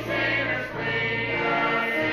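Mixed choir of men and women singing together in harmony, holding long, sustained notes.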